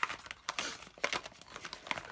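Small cardboard vape-tank boxes with plastic windows being picked up and stacked together, with crinkling of the packaging and irregular light taps and scrapes as the boxes knock against each other.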